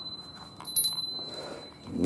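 A small Buddhist bell of the kind used to accompany goeika chanting, ringing with one sustained high tone and struck again about three-quarters of a second in.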